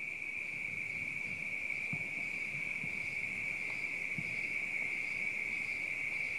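Night insects, crickets by the sound of it, chirring in a continuous steady high-pitched chorus.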